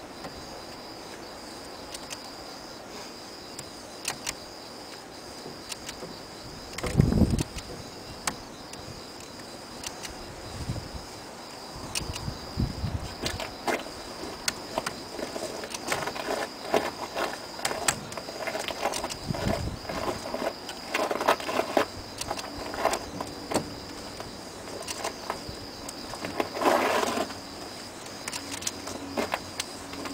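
A steady high-pitched insect trill, typical of crickets, with intermittent clicks, rattles and a few dull knocks from copper magnet wire being hand-wound onto a stator coil on a hand-cranked winding jig.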